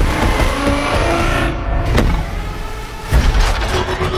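Film-trailer sound effects of giant robots: a dense mechanical rumble and whirring with short metallic tones, a sharp clank about two seconds in and a heavy hit about three seconds in.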